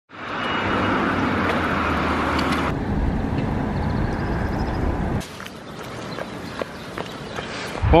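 City street ambience: a steady wash of traffic and tyre noise that drops sharply in level about five seconds in, leaving a quieter street hum with a few light clicks.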